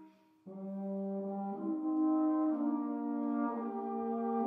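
A small ensemble of period 19th-century valved brass instruments playing slow, sustained chords. After a brief rest, the ensemble comes back in about half a second in, the harmony shifting to a new chord roughly every second.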